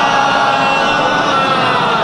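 A congregation reciting the salawat together in unison: one long, loud chant held by many voices, its pitch sinking slightly near the end.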